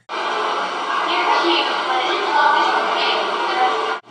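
Old camcorder tape audio of a busy mall: a dense, steady wash of crowd noise and tape hiss, with a young woman's voice talking, barely audible under it. The sound cuts in and out abruptly.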